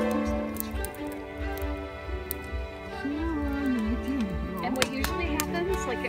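Yellow Labrador chewing a small stick, giving a series of sharp clicks and cracks of wood, over soft background music and a low uneven rumble; a voice is heard briefly in the second half.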